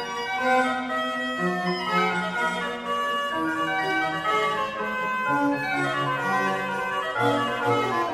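Organ with a small orchestra playing the Allegro of a classical-era organ concerto: held chords and moving melody over a bass line that moves in steps.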